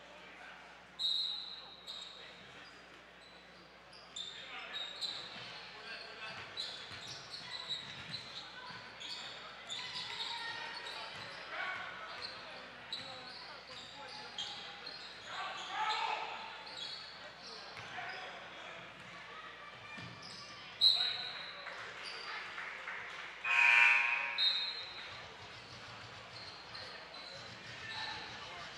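Basketball game in a gym: the ball bouncing, sneakers squeaking on the hardwood court, and players and spectators calling out in the echoing hall, with a loud pitched call near the end.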